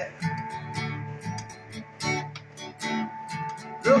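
Steel-string acoustic guitar strummed alone, chords ringing between sung lines. A male voice comes back in right at the end.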